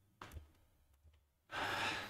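A person's audible breath close to the microphone, a sigh-like rush of air lasting about half a second near the end, after a faint mouth click about a quarter second in.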